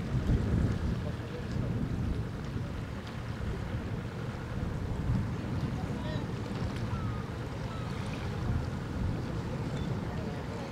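Wind buffeting the microphone: a gusty low rumble throughout, with a few faint short bird calls after the middle.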